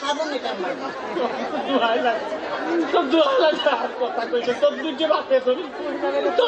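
Speech only: voices talking back and forth, at times over one another, with no other distinct sound.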